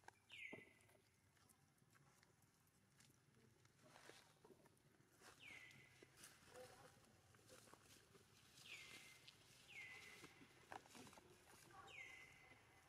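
Faint high animal call repeated about five times, each one dropping quickly in pitch and then holding a steady note for about half a second, with light clicks and rustles in between.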